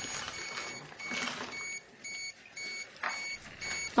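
Handheld radiation meters in alarm mode, sounding short high beeps about twice a second against brief rustling. The alarms signal a high gamma dose rate, about one millisievert per hour, from heavily contaminated clothing.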